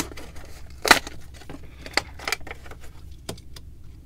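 Plastic blister pack being torn and pried off its cardboard card, crackling and snapping in irregular bursts, with the loudest snap about a second in.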